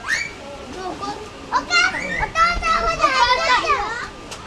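Young children's high voices chattering and calling out, with several overlapping in the second half.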